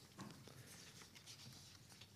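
Faint rustling and crinkling of paper sheets being leafed through by hand, in short irregular bursts.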